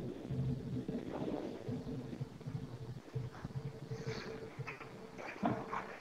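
Faint room noise with a steady hum and a few indistinct, low background sounds.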